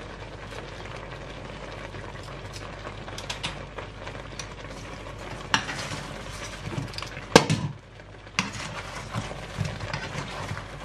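Fried chicken wings being turned in sauce in a nonstick frying pan with a spatula: a steady sizzle under repeated scrapes and clicks of the spatula against the pan, with one louder knock a little after seven seconds in.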